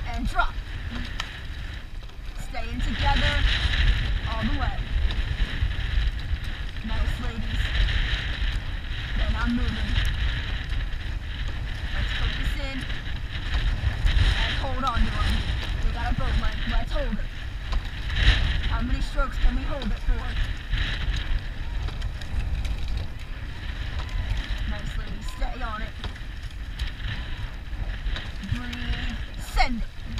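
Wind buffeting the microphone over water rushing and splashing along a rowing shell, the hiss of the water swelling and fading every few seconds as the boat is rowed.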